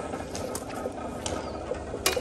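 A sickle hacking and stripping sugarcane stalks: a handful of sharp, irregular cracks, with a short laugh near the start.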